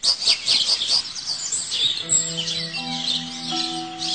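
Many birds chirping in quick, high twitters, with soft sustained music notes coming in about halfway through.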